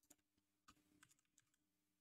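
Very faint computer keyboard and mouse clicks, about five scattered clicks over near silence.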